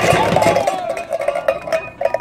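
A stack of tin cans knocked over by a thrown tennis ball, clattering and clinking as they tumble and roll across a tabletop, dying down near the end.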